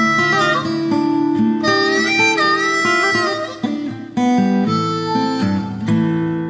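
Harmonica playing a melody of held notes over a strummed acoustic guitar accompaniment, as an instrumental break in the song. The music dips briefly about three and a half seconds in.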